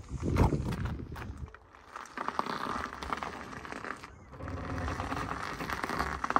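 Footsteps of a person walking, a run of short regular steps, loudest in the first second and a half.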